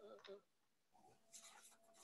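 Near silence on a video-call line, with a few faint, brief noises near the start and a faint thin tone in the second half.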